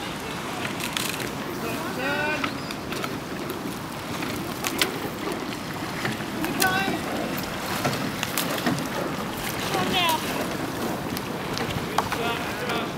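Two-person rowing boat passing close, with the oars clunking in their gates about every two seconds over the wash of the blades in the water. Wind noise on the microphone runs underneath.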